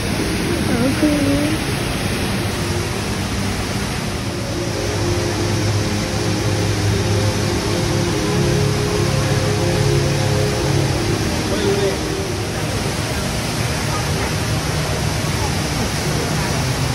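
The Rain Vortex, Jewel Changi's indoor waterfall pouring from the glass dome into its pool, giving a steady rush of falling water, with the voices of onlookers around it.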